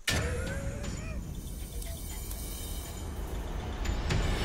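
Propane gas burner fired up under a moonshine still, running with a steady rushing noise heavy in the low end.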